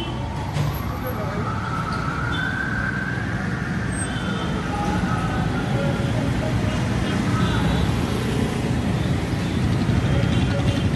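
City road traffic of motor scooters, motorcycles and cars driving past close by: a steady mix of small engines and tyre noise that grows gradually louder as more vehicles approach.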